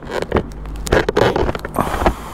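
Scraping, rustling handling noise as a gloved hand fumbles at the helmet-mounted camera and microphone, with irregular sharp knocks. Underneath is the low, steady hum of the motorcycle idling.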